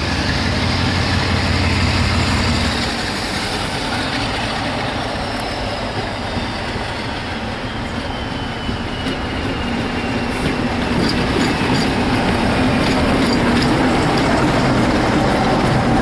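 British Rail Class 47 diesel locomotive running past with a train of coaches, its engine and wheels growing louder over the last few seconds as it draws close. Scattered clicks are heard near the end.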